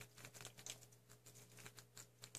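Near silence: room tone with a low steady hum and faint scattered soft clicks.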